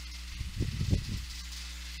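A short breath puffing against the microphone about half a second in, lasting under a second, over a steady low electrical hum and faint hiss.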